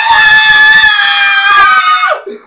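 A man's long, high-pitched falsetto scream, loud and held for about two seconds, its pitch sliding slowly down: an imitation of a woman shrieking at passers-by.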